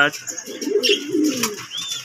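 Pigeons cooing: a low, wavering coo for about the first second and a half. A brief high chirp follows near the end.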